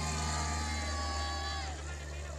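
A small propeller plane's engine droning as it flies past, its pitch dropping about a second and a half in.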